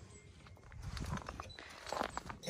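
Footsteps crunching on snowy ground: a few irregular soft steps starting about half a second in.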